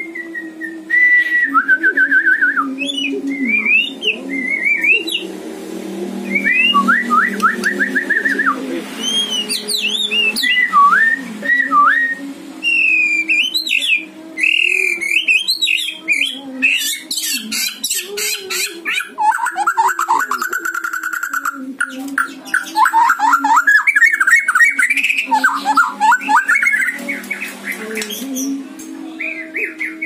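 White-rumped shama singing a long, varied song of whistled phrases, fast trills and chattering notes with short breaks between phrases, the full mimicked repertoire that keepers call isian. A steady low hum runs underneath.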